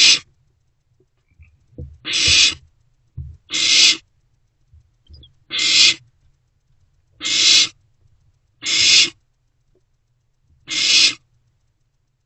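Barn owl owlets giving harsh hissing screeches, seven in all, each about half a second long and coming roughly every one and a half seconds. These are the food-begging calls of barn owl nestlings.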